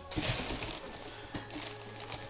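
Tissue paper rustling briefly, mostly in the first half second, as a boot is lifted out of its box, then a few light knocks of handling. Faint steady background music runs underneath.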